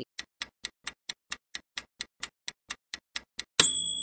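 Ticking-clock countdown sound effect, about four even ticks a second, ending near the end in a bright ding that rings on and fades as the answer is revealed.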